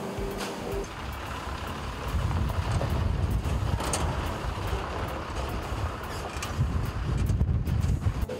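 A steady machine hum that stops about a second in, then the low rumble of heavy diesel lorry engines running, growing louder about two seconds in, with scattered light clicks and knocks.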